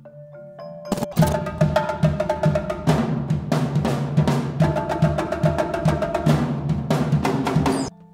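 Percussion quartet playing: soft ringing mallet notes on marimba and vibraphone, then about a second in a loud, fast passage of drums and marimba with many sharp strikes begins. It cuts off suddenly just before the end, and the soft mallet notes return.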